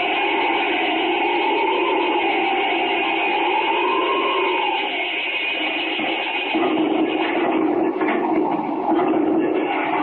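Old-time radio sound effect of an avalanche rushing down a mountain: a steady rushing noise with a howling wind-like tone that slowly rises and falls over the first five seconds, settling into a lower, steadier drone.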